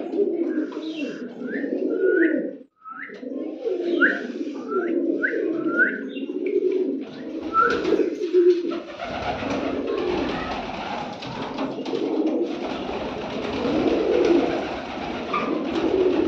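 A loft full of domestic pigeons cooing continuously, with a run of short rising chirps over the first half. From about seven seconds in, a rustling hiss and low rumble join the cooing.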